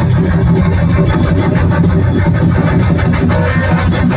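Live rock band playing loudly through a large outdoor PA: electric guitar over a steady drum beat.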